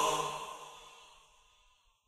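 The last held sung note of a song and its backing fading out, gone by about a second and a half in.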